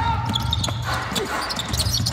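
Basketball dribbled hard on a wooden sports-hall court, a few sharp bounces in quick succession, over the low rumble of the hall and players' shoes and voices.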